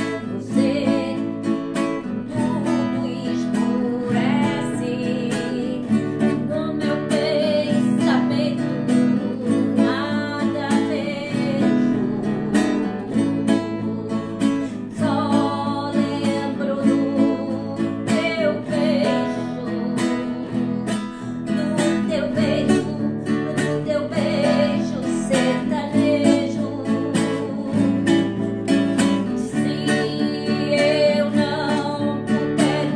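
A woman singing a Portuguese-language song in sertanejo style over strummed acoustic guitar.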